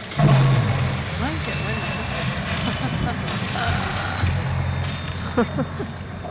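Outdoor projection show's soundtrack over loudspeakers: a deep, steady rumbling drone that starts suddenly and loudly just after the start, with crowd voices chattering over it.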